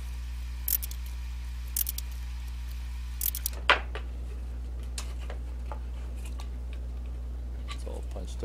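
Sharp knocks of a two-prong forked stitching chisel being driven through thick leather to cut stitching holes along a curve, a few strikes with the loudest a little before the middle, then lighter clicks as the leather is handled. A steady low hum runs underneath.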